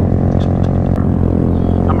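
Honda Grom's 125 cc single-cylinder four-stroke engine running at a steady cruising speed, a constant low drone.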